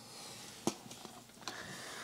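Quiet handling sounds of a round metal tin being lifted out of a gift box, with one light tap.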